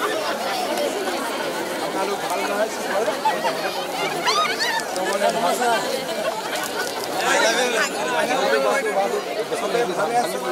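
A large crowd of people talking and calling out all at once: a dense, continuous babble of voices, with a few louder raised voices standing out.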